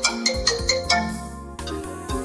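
Mobile phone ringing with an incoming call: a ringtone melody of quick, marimba-like struck notes over a low bass, the run of notes thinning out near the end.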